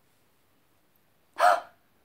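A woman's short exclaimed 'Oh', once, about one and a half seconds in, after more than a second of near silence.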